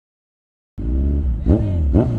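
Silence for about the first three-quarters of a second, then a motorcycle engine running, heard from on the bike, its pitch falling and rising a couple of times.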